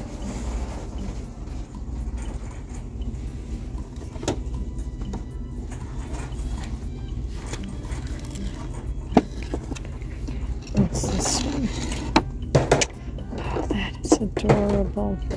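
Steady low rumble of shop ambience, with a few sharp clacks of wooden decorative signs knocking together as they are handled, mostly in the second half.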